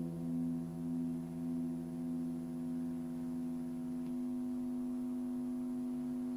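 A held final chord of a guitar piece, its notes sustaining steadily with a slow pulsing in the first couple of seconds; a lower note of the chord stops about four seconds in.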